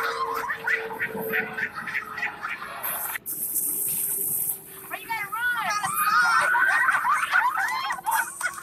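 Voices and commotion from the fail-video clips. Mixed chatter cuts off abruptly about three seconds in, giving way to a steady hiss of outdoor noise, and then to high, excited voices that rise and fall quickly through the second half.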